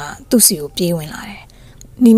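Speech only: a woman's narrating voice speaks a short phrase in the first second, then pauses.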